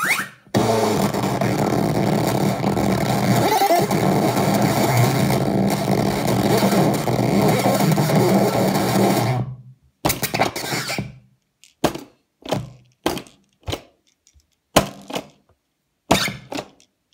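Circuit-bent Czech-language talking toy putting out a continuous dense, distorted electronic noise over a steady low drone for about nine seconds. It then cuts off into a string of short, choppy bursts with silent gaps between them.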